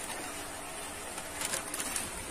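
Plastic bag crinkling as it is handled, with a few short crackles about one and a half seconds in.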